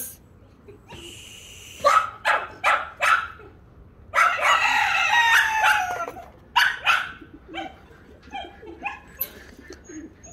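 A rooster crowing once, a long call of about two seconds starting about four seconds in. A few short sharp sounds come before and after it.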